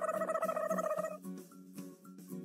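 Light children's background music with soft repeating notes. A buzzy, rapidly pulsing tone effect is held for about the first second and then stops.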